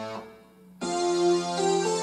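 Portable electronic keyboard playing a Romani song with a piano-like sound: the held chords die away just after the start, there is a pause of about half a second, then a new chord with a bass note comes in under a moving melody.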